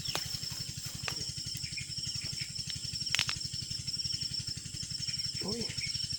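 A steady high-pitched insect trill over a low, fast, even pulsing hum, with a few sharp clicks, the loudest about three seconds in.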